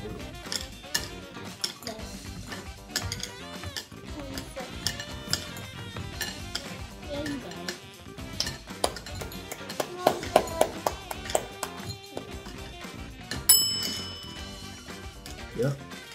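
Background music over a run of light clicks and clinks of hard candies being picked out of a clear plastic bowl and dropped onto paper plates. A bright ringing chime sounds once, about three-quarters of the way through.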